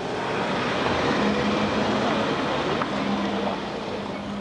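A motor vehicle passing on the road: a rush of engine and tyre noise that swells over the first second, holds, and eases near the end.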